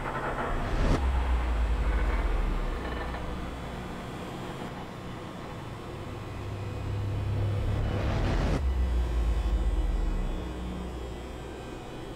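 Deep rumbling drone of a horror soundtrack that swells twice. Each time a short rising whoosh cuts off sharply into a low boom, first about a second in and again about eight and a half seconds in.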